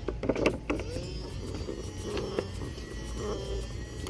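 Boxed M.A.R.S. motorized attack robot toy running off its 'Try Me' button: its small electric motor whirring steadily, wavering a little in pitch.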